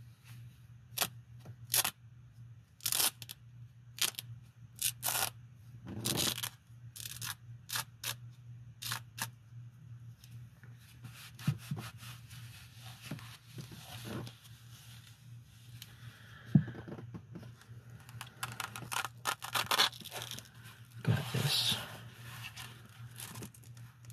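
Velcro on a black nylon pouch being ripped open and pressed shut again and again, in short rasps, together with the rustle of work gloves on the fabric. The rasps are spaced apart at first and turn into denser crackly handling in the second half.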